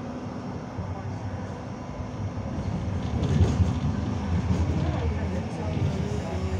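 Interior of a moving Hannover TW 6000 tram: a steady low rumble of its wheels and running gear on the rails, growing louder in the second half.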